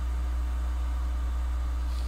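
Steady low hum with faint hiss, unchanging throughout: the recording's background noise during a pause in speech.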